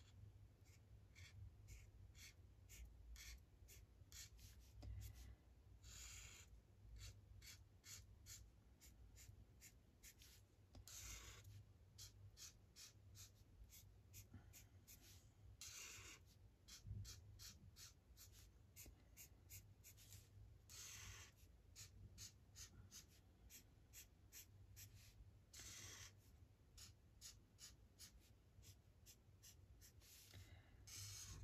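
Faint, quick short strokes of an alcohol marker's felt nib scratching across tracing paper, a couple of strokes a second, as small leaf shapes are drawn.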